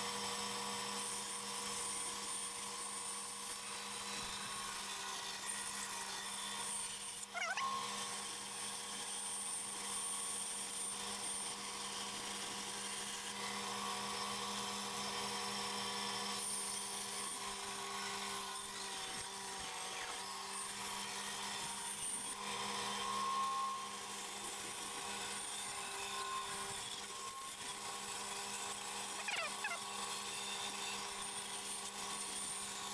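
Large bandsaw running with no load, a steady quiet hum, while the wood is lined up for a cut. A light knock about seven seconds in.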